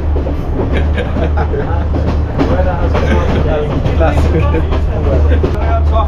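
Passenger train running on its track, heard from an open carriage doorway: a steady low rumble from the wheels and carriage, with passengers' voices over it.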